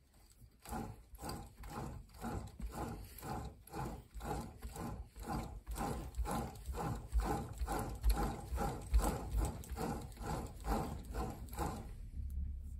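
1956 Sturmey-Archer AG 3-speed Dynohub being spun by hand on its clamped axle, its shell and internals giving a rhythmic whirring clatter of about three pulses a second that starts about half a second in. The dynamo is generating as it turns, about 6 volts on the meter.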